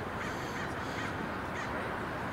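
A crow cawing several times over steady background noise.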